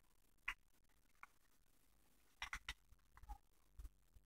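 Paper dollar bill being folded and creased by hand: a few faint, short crinkles and clicks, one about half a second in and a quick cluster in the second half, over near silence.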